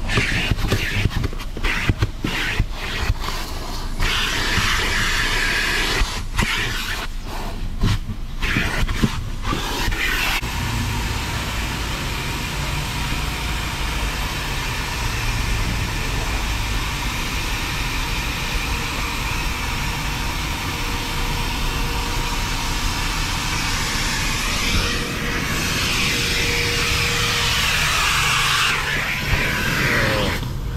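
Vacuum cleaner running as its nozzle sucks up dirt from a car's floor carpet. It breaks off briefly several times in the first ten seconds, then runs steadily.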